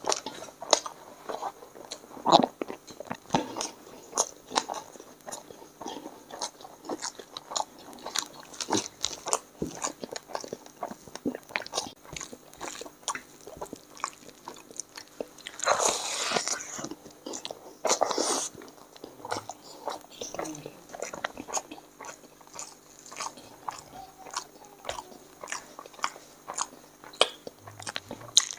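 Close-miked mouth sounds of eating chicken biryani and curry by hand: steady wet chewing and lip smacks, many small clicks throughout. Two louder, longer noisy stretches come about 16 and 18 seconds in.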